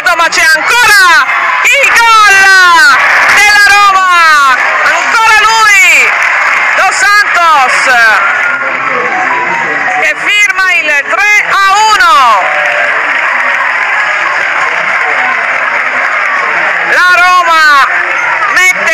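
Voices shouting and cheering excitedly over a goal, in repeated bursts with big swoops in pitch, over crowd cheering and applause. The shouting stops about 12 seconds in, leaving the crowd noise, and a short burst of voices returns near the end.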